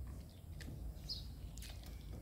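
A bird chirps once, briefly, about a second in, over a low steady outdoor rumble. Faint wet squishes come from hands mixing chicken into a thick green yogurt marinade in a glass bowl.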